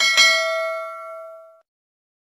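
Notification-bell sound effect from a subscribe-button animation: a click and then a bright bell ding that rings on and fades out by about a second and a half.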